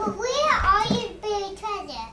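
A young child's high-pitched voice calling out in two short stretches, with no clear words.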